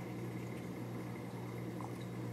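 Hang-on-back aquarium filter running: a steady low hum under an even wash of trickling water.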